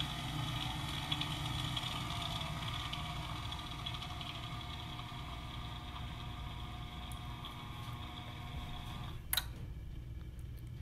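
Electric motor of a BFT Kustos gate operator driving its carriage along the threaded screw, a steady mechanical whir with a hum, during the control board's auto-set learning run. About nine seconds in there is a click and most of the whir stops.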